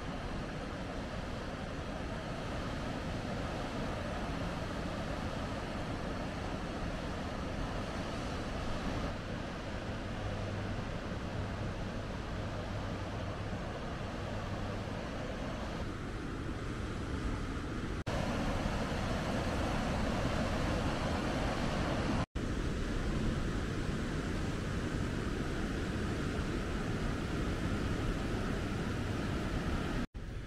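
Steady wash of ocean surf, shifting slightly in level at shot changes, with a brief dropout a little past two-thirds of the way through.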